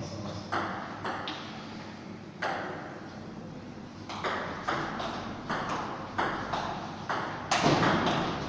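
Table tennis ball clicking off bats and a Stiga table: a few single clicks in the first seconds, then a rally from about four seconds in, with sharp clicks coming two to three a second and getting louder towards the end.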